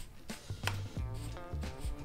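Background music with a repeating bass line, with a few sharp clicks over it.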